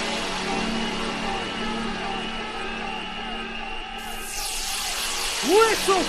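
Bounce (donk) club mix in a breakdown: sustained synth tones held over a thinned-out low end, the treble filtered down and then swept back open about four seconds in. Near the end the bouncy pitched stabs of the beat come back in, louder.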